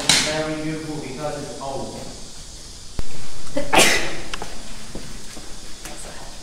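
People talking in the first seconds, then a single loud sneeze about four seconds in, just after a sharp click.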